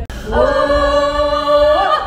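A small group of singers holds one long note together, which lifts slightly in pitch near the end. A brief click comes at the very start.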